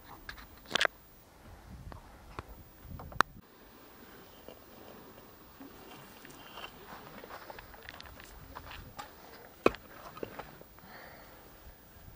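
Rough stones and coarse sand crunching and scraping as they are handled and packed under a bogged-down van's front tyre, with a few sharp knocks of stone on stone standing out.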